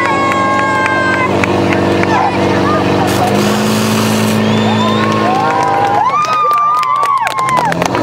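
Portable fire pump engine running at steady high revs as it drives water through the hoses, with people shouting and cheering over it; the engine tone weakens about six seconds in.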